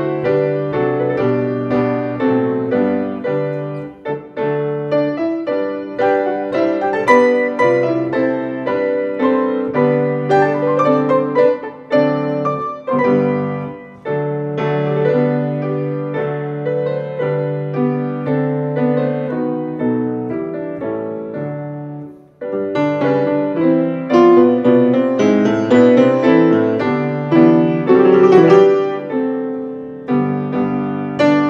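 Two grand pianos played together as a duet, with a steady low bass line under chords and melody. The music nearly stops for a moment about two-thirds of the way through, then comes back louder and busier.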